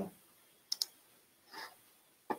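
A pair of sharp, faint clicks close together about a second in, a computer click as the slideshow is advanced to the next slide.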